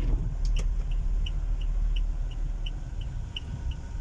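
Steady low rumble of a car's engine and tyres on a wet road, heard from inside the cabin, with the car's indicator ticking regularly about three times a second from about half a second in.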